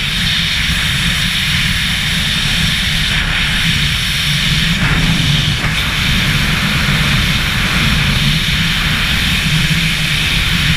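Freefall wind rushing hard over a helmet-mounted camera's microphone during a wingsuit flight: a loud, steady roar with no break.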